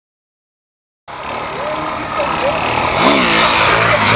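Silence for about the first second, then an off-road motorcycle engine running and revving, rising and falling in pitch once near the end, with people's voices shouting over it.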